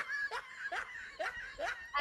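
Quiet snickering laughter: about five short laughs in a row, each falling in pitch.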